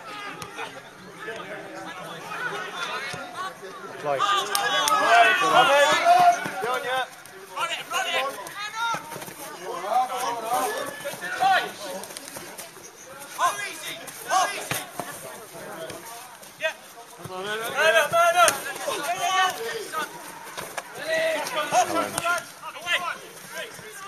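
Indistinct shouting and calling from footballers and spectators on the pitchside, several loud calls around a few seconds in and again near the end.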